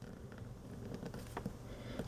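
Faint scratching of a ballpoint pen drawing a circle on a sheet of paper.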